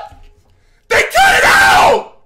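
A man screaming without words into a close microphone: one loud scream of about a second, starting about a second in and falling in pitch at the end.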